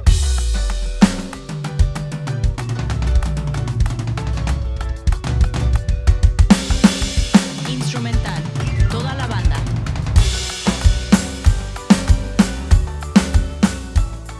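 Roland electronic drum kit played live along with a band backing track (a multitrack with its original drums removed): kick, snare and cymbals over the instrumental. It opens with a crash, has another cymbal crash about ten seconds in, and ends with steady hits.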